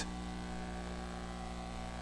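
Steady electrical mains hum with a faint hiss under it.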